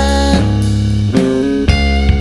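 Instrumental passage of a rock song: electric guitar chords over bass, changing chord about every half second to second.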